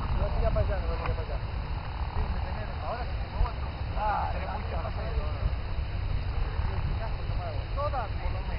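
Wind rumbling on the microphone, a steady low noise, with faint voices talking in the distance.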